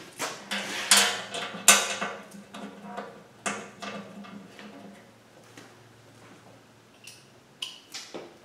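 Metallic clinks and taps as a Milodon oil pan is shifted on the engine block's pan rail and its small bolts are started by hand. The knocks come thick in the first few seconds, thin out, and return as a couple of light clicks near the end.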